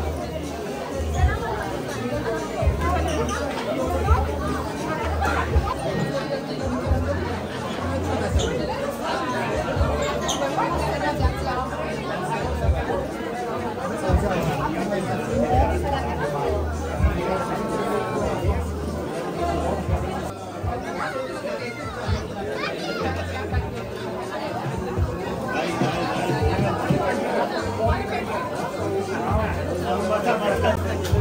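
Many guests talking at once at banquet tables, a steady hum of overlapping conversation with no single voice standing out, over background music with a pulsing bass beat.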